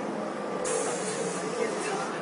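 Compressed air hissing from a city bus's pneumatic system. It starts suddenly about half a second in and lasts just over a second, over faint voices.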